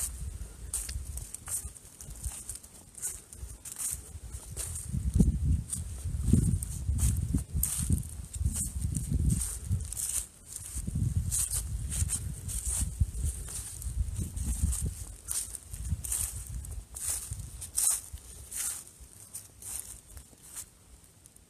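Footsteps crunching through dry grass and fallen leaves at a walking pace, about two steps a second. Under them is an uneven low rumble, loudest through the middle of the stretch.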